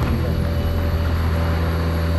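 A steady, low engine drone with a faint higher whine over it, holding level throughout.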